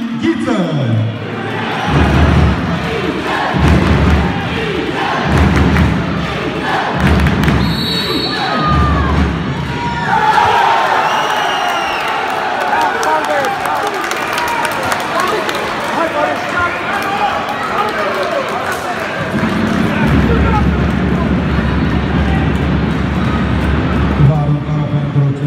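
Indoor handball arena crowd during a penalty shootout: low thumps in a steady beat about every second and a half, and a short high referee's whistle about eight seconds in. After that the crowd breaks into loud shouting and whistling that carries on to the end.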